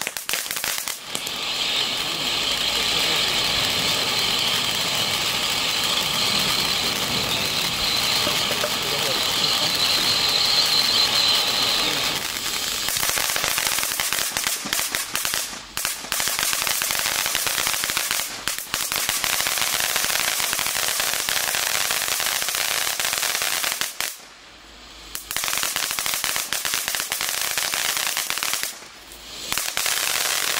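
A 200-gram ground fountain firework spraying sparks, with a steady high hiss for about the first twelve seconds, then a rougher crackle of popping stars. The sound drops away briefly twice near the end.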